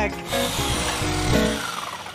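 A chainsaw running and cutting into wood for about a second and a half, then fading, under film-score music.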